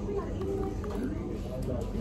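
Indistinct background chatter: other voices talking quietly and unclearly.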